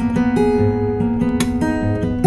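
Background music: acoustic guitar strumming chords, with sustained notes ringing between the strums.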